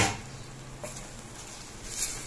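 A spatula knocks once against a steel pan at the start, then the tomato-onion masala fries with a faint, even sizzle.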